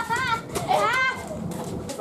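Children's voices calling out while playing, with two high, gliding calls in the first second, then quieter.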